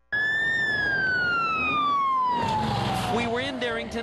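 Fire truck's siren wailing: one long tone that rises briefly, then falls slowly and steadily in pitch.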